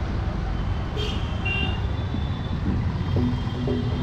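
Street traffic noise: a steady rumble of passing vehicles, with a short high-pitched beep about a second in.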